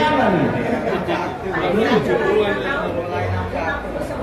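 Several people talking over one another in a room, the words unclear.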